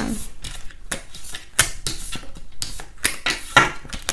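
Tarot cards being shuffled and handled: a quick, irregular run of light clicks and slaps, with two sharper snaps about a second and a half in and near the end.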